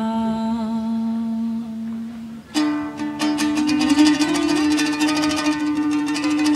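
A long sung note held and fading over the first two seconds or so, then, about two and a half seconds in, a yueqin (moon guitar) bursts in with fast plucked strumming, backed by other plucked strings over a held low note.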